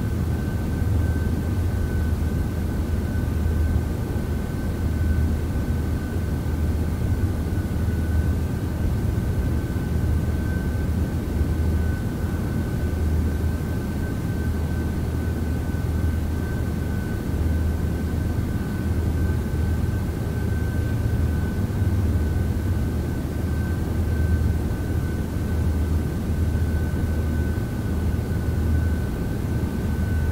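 Camera drone in flight: a steady high whine from its motors and propellers, held at one pitch, over a low rumbling noise that swells and fades.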